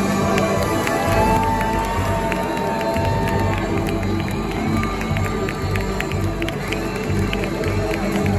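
A live band with saxophones, electric archtop guitars, upright bass and drums playing, with a long held note about a second in, while the crowd cheers over the music.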